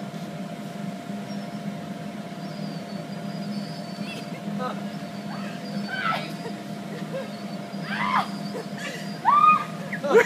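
Steady machine hum of a running mechanical bull ride with its inflatable mat. A few short vocal cries break in about six, eight and nine seconds in.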